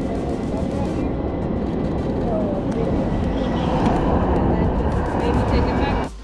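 Loud, steady rumble of vehicle traffic on a city street, growing a little louder toward the middle.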